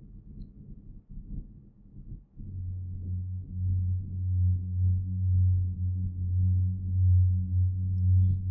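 A low, steady hum starts about two seconds in and keeps going, swelling and easing slowly in loudness.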